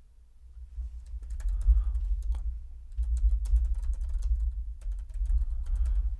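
Typing on a computer keyboard: a quick, uneven run of key clicks starting about a second in, over a low rumble.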